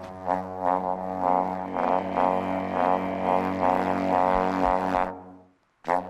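Alphorn being played: a run of quick notes over a steady low tone. It breaks off about five and a half seconds in and starts again just before the end.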